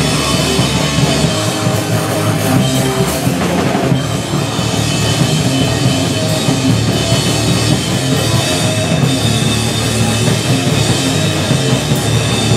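A crust punk band playing live and loud: distorted electric guitars and bass over fast, pounding drums and crashing cymbals, one dense wall of sound.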